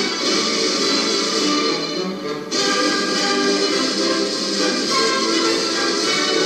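Music playing from a vinyl picture disc on a turntable. It briefly thins out about two seconds in, then comes back in full.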